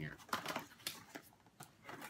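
A small cardboard box being opened and its paper packaging handled: a run of sharp clicks and crinkling rustles.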